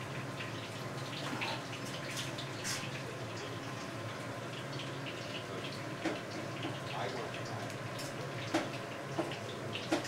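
Chicken cutlets frying in oil in pans on a gas stove, sizzling steadily with many small crackles over a low steady hum. A few sharp knocks of utensils or pans come in the last few seconds.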